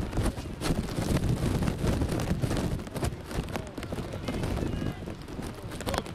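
Wind buffeting the camera microphone in a low rumble, with faint distant shouts from players and spectators.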